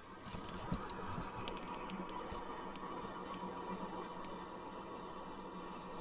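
Faint steady hum and background noise with a few light clicks.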